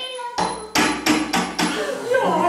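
Knuckles knocking on a window pane: a quick series of about five raps, starting about half a second in.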